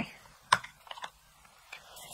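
A few light clicks and taps of small makeup items being handled and set down on a table: one sharp click about half a second in, then a couple of fainter ticks around a second in.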